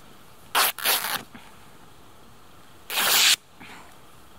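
An old fabric rag being cut with a knife into a long strip, giving short ripping sounds twice near the start and a longer, louder rip about three seconds in.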